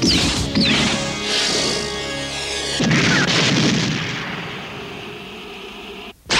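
Cartoon explosion sound effects: a blast at the start, another just after it, and a bigger one about three seconds in that dies away slowly, over the background score.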